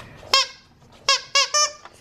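Zippy Paws plush penguin dog toy squeezed by hand, its squeakers going off: one squeak about a third of a second in, then a quick run of three or four more in the second half. The toy has two big squeakers that are very easy to squeak.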